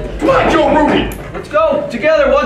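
Several young men's voices calling out over one another as a team huddles with hands raised together.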